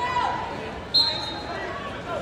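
A referee's whistle blown once, a short sharp high blast about halfway through, over the chatter of spectators in a large gym.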